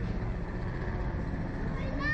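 Steady low rumbling noise, strongest in the bass, with no clear tones or impacts.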